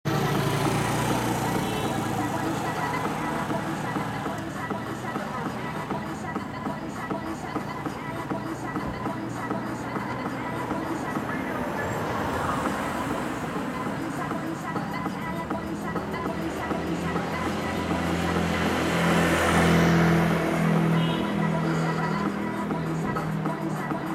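Roadside traffic noise, with a vehicle passing louder near the end, mixed with indistinct voices.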